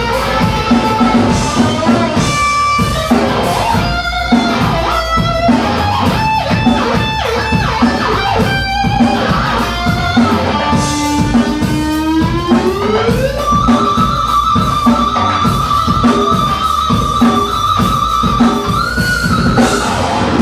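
Live heavy metal: a distorted electric guitar plays a lead line over bass and drums. The lead moves through quick notes, slides upward and then sustains one long note that bends up near the end.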